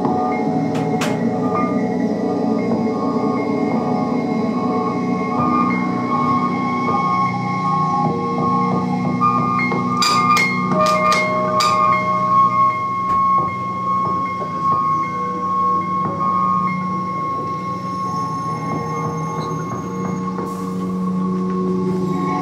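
Ambient electronic music made from field recordings processed live: layered sustained drones, with a short cluster of sharp clicks about ten seconds in.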